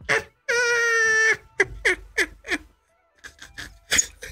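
A man laughing hard: a high, held squeal lasting nearly a second, then a quick run of short bursts of laughter that die down and pick up again softly near the end.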